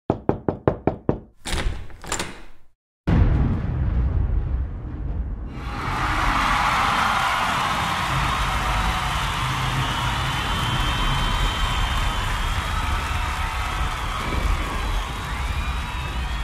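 Garage-recorded blues-rock song intro: a quick run of sharp, evenly spaced clicks, two heavier hits and a brief gap, then the full band coming in about three seconds in, with brighter instruments and cymbals joining a couple of seconds later.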